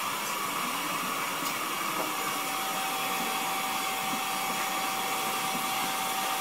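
Steady rushing, airflow-like noise from equipment, with a single steady electronic tone that comes in about two seconds in and holds.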